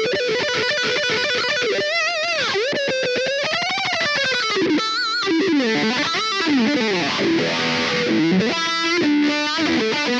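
Paoletti Strat-style electric guitar played lead through an amplifier: sustained notes with a long, slow bend that rises and falls and vibrato a couple of seconds in, then quicker runs of notes up and down the neck.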